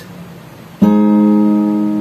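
Acoustic guitar with a capo, a D major chord strummed once about a second in and left to ring.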